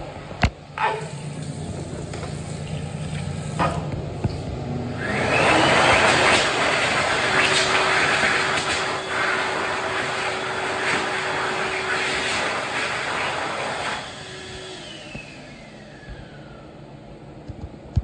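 Excel Dryer XLERATOR XL-W hand dryer kicking on about five seconds in and blowing a loud rush of air with a steady hum for about nine seconds. It then shuts off, and its motor whines down in falling pitch.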